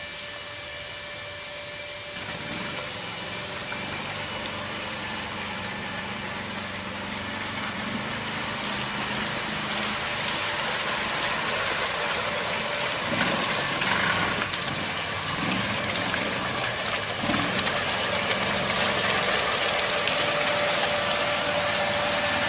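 Mudd Ox amphibious tracked ATV's engine running steadily as the machine pushes through flooded swamp water, growing louder as it approaches.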